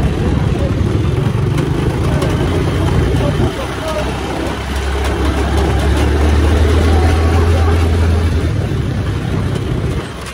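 Open-frame off-road buggy driving on a dirt track: the engine runs steadily under heavy rushing road and wind noise in the open cab. About four and a half seconds in, the engine note drops lower and grows louder for a few seconds.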